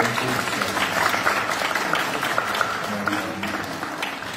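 Congregation applauding: dense, steady clapping that slowly dies down toward the end.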